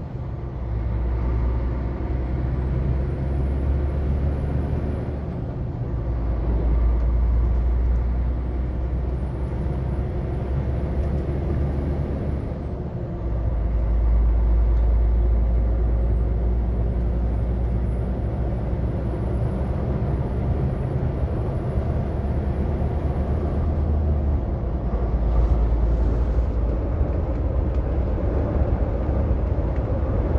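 A heavy truck's diesel engine heard from inside the cab while driving: a deep steady rumble that steps in pitch about three times as it changes gear. A faint high whine climbs slowly and drops off at each change.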